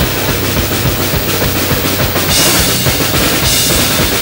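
Drum kit played fast in a heavy metal drum cover: rapid bass drum strokes under snare hits and cymbals. The cymbals ring out louder from a little past halfway.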